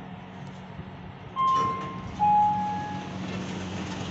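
Sigma elevator chime sounding two sustained notes, a higher one followed by a lower one, over the car's steady low hum.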